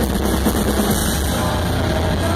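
Live metalcore band playing loud, led by the drum kit, in a stretch without vocals.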